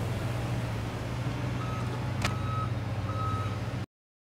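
A steady low engine hum, with three evenly paced beeps of a vehicle's reversing alarm coming in about a second and a half in. A single sharp click sounds a little after two seconds, and the sound cuts off abruptly just before the end.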